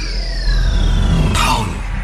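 Logo intro sound effect: long descending whooshing sweeps over a deep low rumble, with a short sharp swish about one and a half seconds in.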